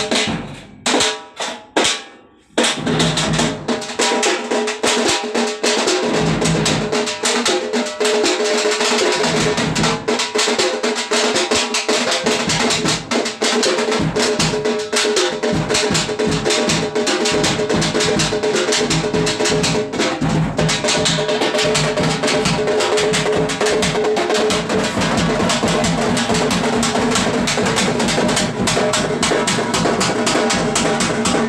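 A small group of drums beaten with sticks: a few separate strokes, then from about two and a half seconds in, fast, continuous drumming with sharp high strokes and deep bass beats together.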